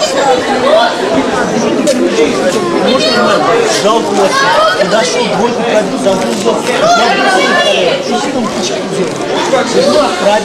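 Many people talking at once: the indistinct chatter of spectators around a boxing ring in a gym hall.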